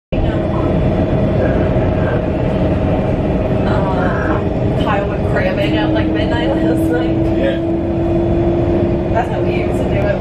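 Steady running noise inside a moving electric commuter rail car, heard from a passenger seat. A steady hum runs under it, and a second, lower tone joins about halfway through and holds until near the end. Passengers' voices come through in the background.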